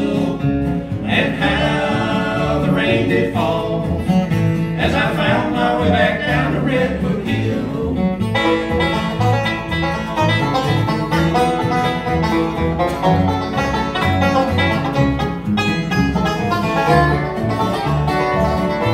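Bluegrass band playing an instrumental break between verses: acoustic guitar, mandolin and upright bass, with the five-string banjo picking fast rolls in the lead from about halfway through.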